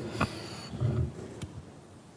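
Quiet hall room noise in a pause between speakers, with two faint clicks and a brief low rumble about a second in.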